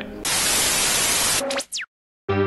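TV-static sound effect: a steady burst of white-noise hiss lasting about a second, then a short falling electronic whine that cuts off suddenly.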